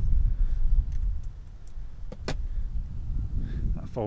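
Low, uneven rumble of handling noise on the microphone as the camera is moved about in the car's rear cabin, with one sharp click a little past two seconds in.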